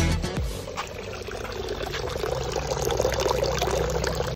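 A music track ends in the first half second, then water trickles steadily in a concrete drain gutter, growing slightly louder toward the end.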